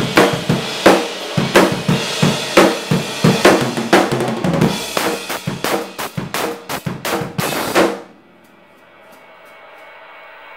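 Acoustic drum kit played hard, with kick, snare and cymbals in a steady rock beat, during a studio take of a song's chorus. The strikes quicken into a fast run near the end and the playing cuts off abruptly about eight seconds in.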